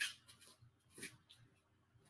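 Near quiet, with two faint brief rustles, one at the start and one about a second in: a karate gi's fabric and bare feet brushing a padded mat as a slow spin is set up.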